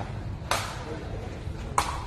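Two sharp smacks of a sepak takraw ball being kicked by players' feet during a rally, about a second and a quarter apart, each ringing briefly.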